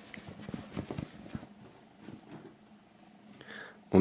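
Cotton T-shirt rustling as it is unfolded and brushed flat on a wooden table: faint, irregular soft rustles, mostly in the first second and a half.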